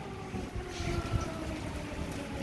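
Air-raid siren sounding an air alert: a faint, steady wailing tone held over a low rumble.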